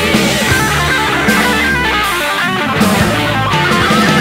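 Hard rock band music, an instrumental passage led by electric guitar with no singing.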